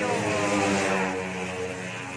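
A motorcycle engine running, its pitch dropping over about the first second and then holding steadier.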